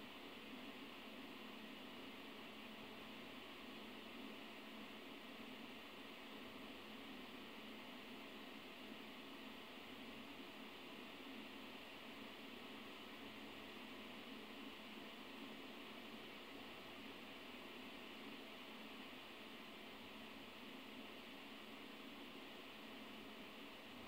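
Near silence: a steady faint hiss of recording noise, with no speech or other events.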